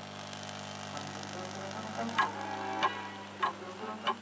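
Programme sound from a Record V-312 valve black-and-white television's built-in speaker: a quiet stretch of soundtrack with faint music and three sharp clicks in the second half, over a steady low hum.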